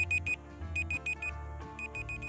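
Countdown timer beeping like an alarm clock: quick groups of four high beeps, about one group a second, over soft background music.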